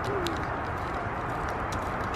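Steady outdoor background noise with faint, light footsteps on a concrete path, and a short, low bird call just after the start.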